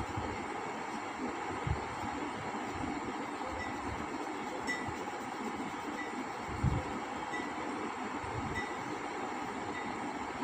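Steady background rumble and hiss, with two soft low thumps, about two seconds in and near seven seconds in, as the hand presses and rubs on the paper. Faint short high peeps repeat about every second and a quarter from about three and a half seconds in.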